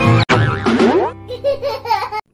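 Cartoon intro jingle: music that cuts out for an instant, then a sound effect rising in pitch about half a second in, followed by wobbling pitched effects in the second half.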